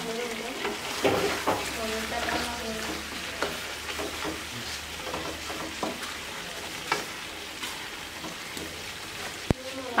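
Fish pieces and potatoes sizzling in curry in a metal karahi on a gas burner, stirred with a wooden spatula that scrapes and clicks against the pan, with one sharper knock near the end.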